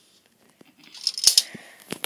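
Plastic Connect 4 discs clattering and clicking: a rustling clatter with a few sharp clicks about a second in, and another click near the end.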